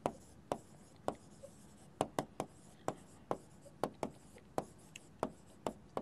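Pen tip tapping and scratching on the glass of a touchscreen whiteboard as words are handwritten: a string of short, sharp, irregular taps, about three a second.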